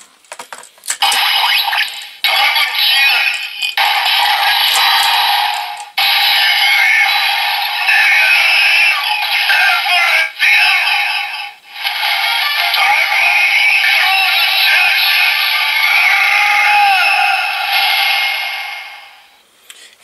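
A Bandai DX Sclash Driver transformation belt toy reading an inserted Dragon Full Bottle, with a few clicks as the bottle goes in, then its electronic voice call-outs and standby music. The sound is tinny with no bass, from the toy's small built-in speaker, and comes in several sections split by short breaks, fading out near the end.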